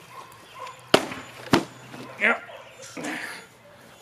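Two sharp hits about half a second apart: a khopesh blade striking a plastic water-jug target.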